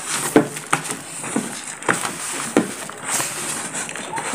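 A hand mixing crumbly scone dough of flour, eggs and margarine in a plastic basin: a steady rustling scrape with irregular knocks of the hand against the bowl, about five in all.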